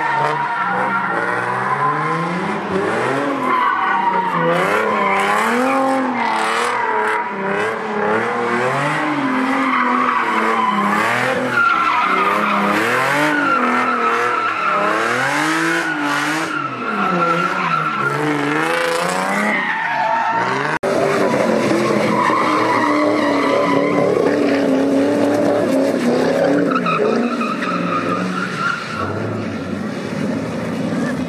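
Car engines revving up and down in pitch every second or two, with tyre squeal as cars spin donuts. There is an abrupt cut about two-thirds of the way through, after which a second car carries on the same way.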